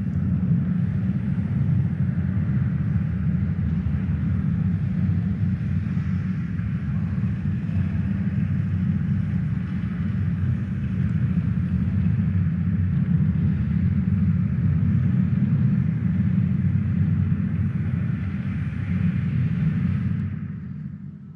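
A steady, dense low rumble with a fainter hiss above it, holding an even level throughout.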